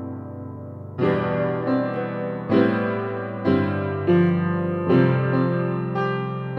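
Sampled 1879 Guild & Sons square grand piano (the Piano Noir virtual instrument) playing a slow run of chords. A sustained chord fades over the first second, then new chords follow roughly once a second, each left ringing with the square grand's soft, aged tone.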